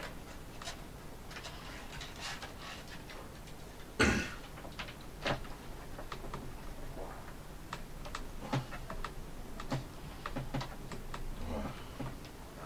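Small plastic clicks and knocks from a ThinkPad X230 laptop's display assembly and chassis being handled and fitted together, with one louder knock about four seconds in.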